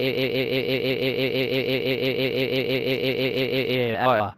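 A synthesized cartoon voice crying 'waaaa' in one long, drawn-out wail that wobbles in pitch about six times a second, evenly like a machine.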